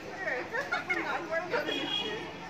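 Several people talking over one another: overlapping conversational chatter from a small gathered group.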